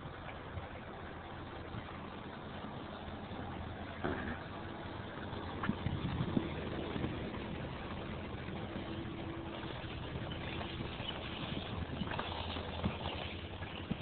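Steady hum of a motor vehicle engine running nearby over street background noise, with a few faint knocks.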